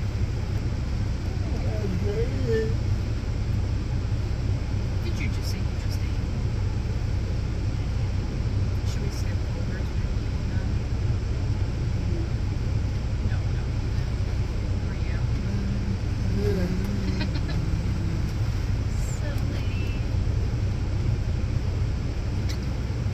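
Minivan idling, heard from inside the cabin as a steady low rumble, with faint murmured voices twice.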